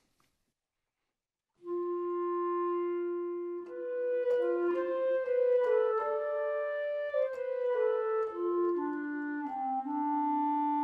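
Sampled clarinet from ProjectSAM's Lumina legato patch, played on a keyboard. After a moment of silence comes one long held note, then a slow melody of smoothly connected notes, ending on a held note. The legato transitions come through without odd glitches.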